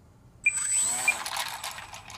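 A small battery-powered electric pusher motor and propeller on a 2 ft RC model plane starts suddenly about half a second in and keeps running with a steady high whine as the plane taxis.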